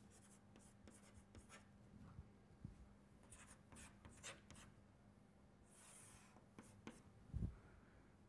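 Chalk writing on a chalkboard: faint, short scratching strokes in two bursts, with a low thump near the end.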